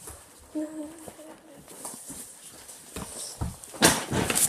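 A short laugh, then handling noise from a phone being moved about, with small clicks and a loud knock near the end.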